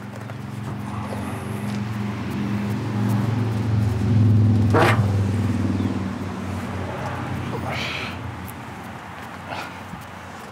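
A motor vehicle's low engine hum swells to a peak about halfway through and then fades away, with one sharp clank about five seconds in.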